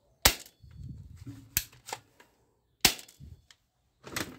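Three sharp plastic clacks, about a second and a half apart, from a camouflage plastic toy rifle being handled, with quieter clicks and rustling in between.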